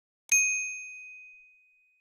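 A single bright notification-bell ding sound effect, struck once and ringing out as it fades over about a second and a half.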